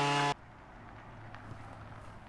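A loud steady electric-sounding buzz cuts off abruptly about a third of a second in, then a car engine runs faintly under quiet outdoor ambience, with a few light clicks.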